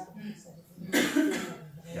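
A person coughs once, a short sharp burst about a second in.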